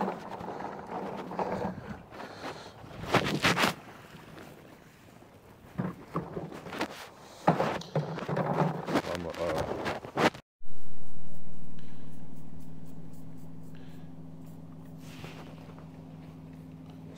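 Dirty water sloshing and splashing as it is dumped out of a Ridgid wet/dry shop vac's plastic drum, with knocks from the drum being handled. About ten seconds in the sound drops out briefly, and a steady low hum follows.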